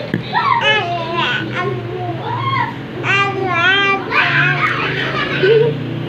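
A baby babbling and squealing in high, sliding vocal sounds, without words. A steady low hum runs underneath, from an electric fan running.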